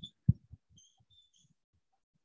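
Mostly quiet: a soft low thump about a quarter second in, then a few faint, short squeaks of a marker on a whiteboard while an equation is written.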